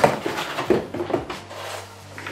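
Moulded pulp cardboard packaging insert being pulled out of a cardboard box: a few short knocks and scrapes of cardboard against cardboard, mostly in the first second and a half.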